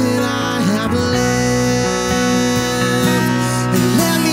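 Live worship song: a man singing while playing an acoustic guitar, over steady held notes from the accompaniment.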